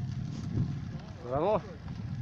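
Steady low rumble of wind buffeting the microphone of a moving camera, with one short shout, rising then falling in pitch, about one and a half seconds in.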